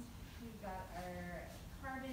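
Indistinct voices talking in short phrases, with no words that can be made out.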